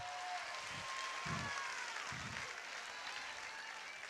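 Congregation applauding, faint and dying away slowly.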